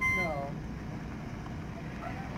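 Class C motorhome driving slowly toward the listener over a dirt road, a steady low engine rumble with the crunch of tyres on gravel.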